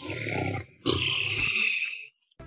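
Animal roar sound effect, heard twice: a short roar, then a longer one after a brief break.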